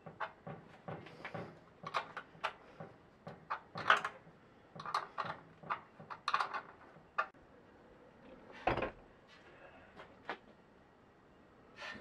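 Metal spanner working the nuts on battery terminal posts, giving irregular light metallic clicks and scrapes as the bus-bar links are tightened down. There is one louder thump near nine seconds.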